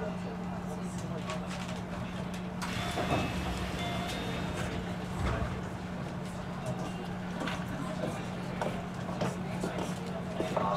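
Keio 1000 series electric train heard from inside the car as it runs into a station, with a steady low hum. A few short high tones come about three to four seconds in.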